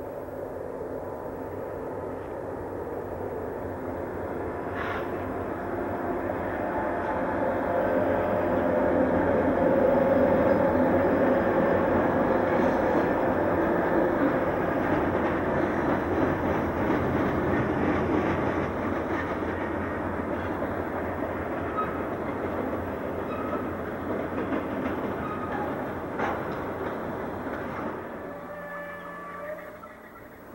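Freight train of tank cars rolling across a steel girder bridge. The wheel-and-rail noise builds to its loudest about ten seconds in, holds steady, then drops away sharply near the end.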